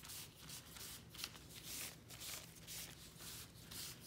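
Paper towel rubbing and dabbing over damp parchment (baking) paper, spreading walnut stain in quick, repeated scratchy strokes, about two or three a second.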